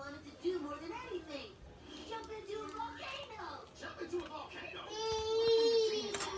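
A young child's voice babbling without clear words, then one long, steady, high cry held for about a second near the end.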